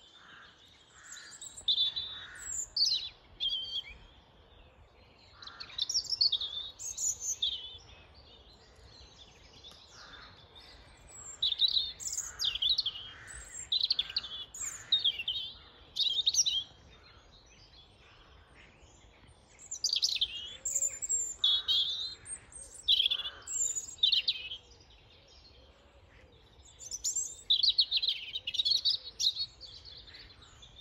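European robin singing its territorial song: high, varied warbling phrases a few seconds long, broken by short pauses, repeated about five times.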